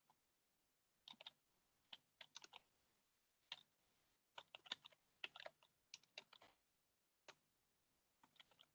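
Faint computer keyboard typing: short runs of keystrokes with pauses between them.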